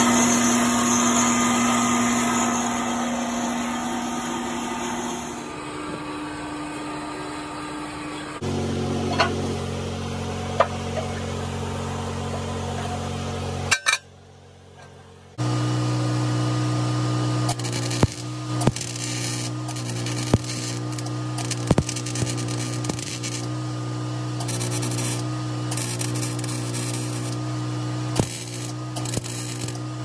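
A metal-cutting band saw running through a steel bar, a steady machine sound. After a short break, electric arc welding crackles irregularly over a steady hum.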